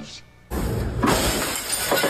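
After a short quiet gap, a sudden crash about half a second in as a person and a portable metal dance pole fall to a wooden floor, followed by metal clattering and clanking with sharp knocks about a second apart.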